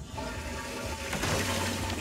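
A rushing, watery whoosh sound effect that swells toward the end, over faint background music.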